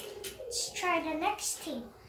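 A child's voice speaking indistinctly, in short phrases.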